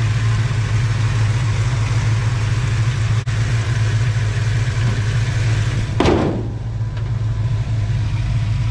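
The 1983 Dodge Ramcharger's 360 Magnum V8, with long-tube headers, an Edelbrock carburettor and a mild cam, idling steadily with a constant low hum. A brief rush of noise cuts across it about six seconds in.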